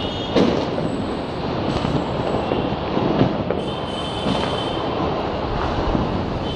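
Dense, continuous noise of Diwali fireworks and firecrackers going off around the neighbourhood, with several sharp bangs and a few high, steady whistles.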